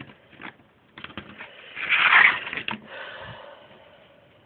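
Fabric being handled and shifted on a cutting mat: a few light clicks and rustles, then a louder hissing rustle lasting about a second, two seconds in.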